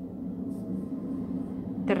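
A steady low background hum, with faint soft rustles of yarn being worked with a crochet hook.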